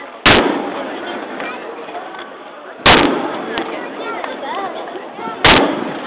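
Aerial firework shells bursting overhead: three sharp bangs about two and a half seconds apart, each trailing off in a rolling echo. People talk throughout.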